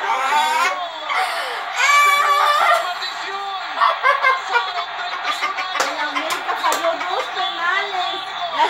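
Voices and background music from a television football broadcast, heard through the TV's speaker.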